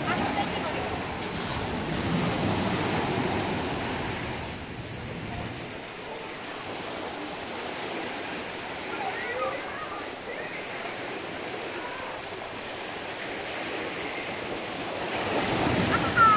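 Small waves breaking and washing up onto a sandy shore, a steady surf, somewhat louder in the first few seconds.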